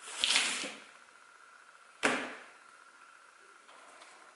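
Two short swishes about two seconds apart, the second one starting more sharply, each fading within about half a second, as lunch items are slid and set down on a wooden tabletop.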